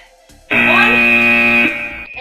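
A loud electronic buzzer tone starts suddenly about half a second in and holds one steady pitch for just over a second before fading: the signal that a timed exercise interval is over.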